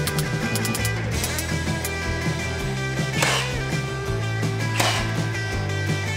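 Guitar-driven rock background music, with two sharp shots about a second and a half apart near the middle: a cordless nail gun driving nails into the wooden frame.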